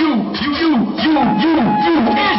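Hip hop backing beat played loud through a club PA: a low tone swooping up and down a bit over twice a second over steady drum hits, with a higher held tone coming in about halfway through.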